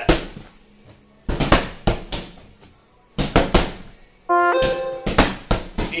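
Medicine ball slammed repeatedly onto a rubber gym mat, each slam a sharp thud followed quickly by a bounce, about one slam every one to two seconds. About four seconds in, short pitched tones of music sound over the slams.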